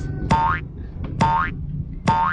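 Outro jingle sound effect: two cartoon-style boings, each a quick pitch sweep sliding steeply upward, about a second apart, with a third starting at the very end, over a low music bed.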